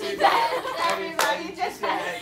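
Hand clapping mixed with the voices of a group of people.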